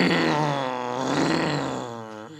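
A long, drawn-out vocal cry in a man's pitch range, held for about two and a half seconds, then sliding down in pitch and fading near the end.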